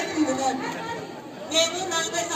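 A woman speaking into a microphone over a loudspeaker system, with chatter from the gathering behind her.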